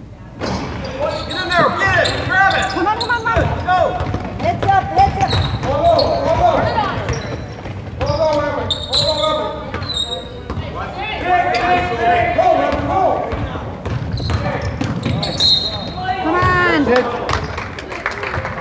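Basketball bouncing on a hardwood gym floor during play, with people's voices calling out over it in the hall.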